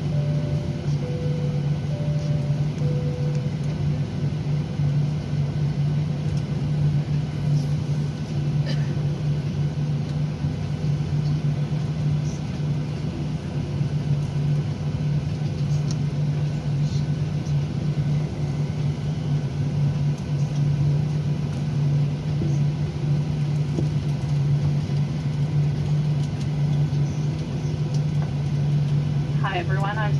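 Steady cabin noise inside a Boeing 737-800 moving on the ground: a continuous low hum from the engines and air conditioning. In the first three seconds a two-tone high-low cabin chime sounds twice.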